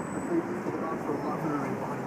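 Quiet, indistinct speech over a steady background of street traffic noise.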